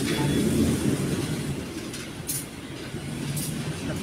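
Low, steady rumble of a semi-truck's engine running.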